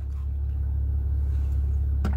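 Steady low rumble inside a car's cabin.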